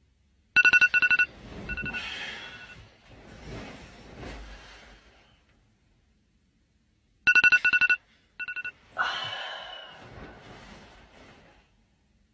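Phone alarm going off twice, about seven seconds apart, each time as a burst of rapid, loud, high-pitched beeps and then a short extra beep. Each burst is followed by a few seconds of softer noise.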